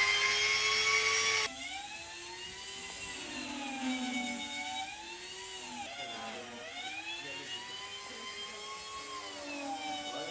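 Handheld electric grinder carving ice, a high whirring whine. It is loud and steady at first, drops suddenly to a quieter level at about a second and a half, then goes on with its pitch wavering up and down.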